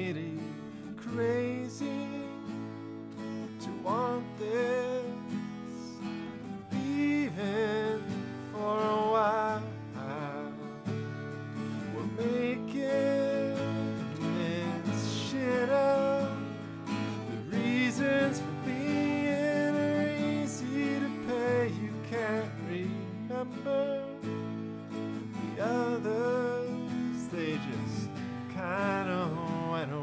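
Acoustic guitar strummed steadily, with a man singing along at times.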